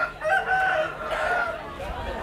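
Rooster crowing: one drawn-out crow lasting about a second and a half.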